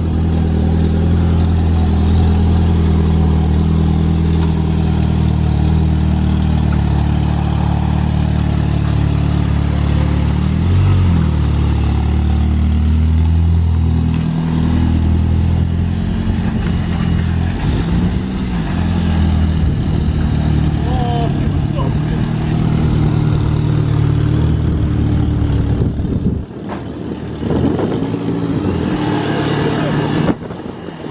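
Turbocharged Mitsubishi Lancer's engine idling steadily, its pitch wavering briefly about ten seconds in. The sound drops away sharply about 26 seconds in.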